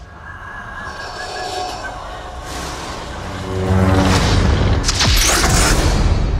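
Film-trailer sound design and score: a low rumble swells steadily, then about halfway through breaks into a loud, booming crescendo with pitched tones and a rushing noise.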